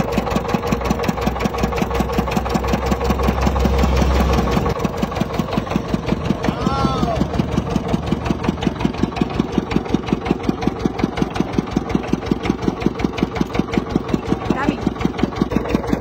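Engine-driven sugarcane crusher running steadily with a fast, even pulse. A heavier low hum in the first few seconds eases off about four and a half seconds in.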